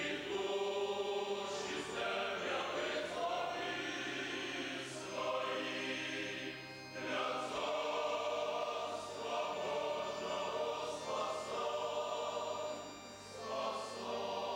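Church choir of men's and women's voices singing a Christian hymn in harmony, with held chords over a sustained bass line. The singing breaks briefly between phrases about seven seconds in and again near the end.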